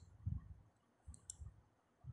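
Faint sounds: a few soft low thumps and two brief high clicks a little past the middle.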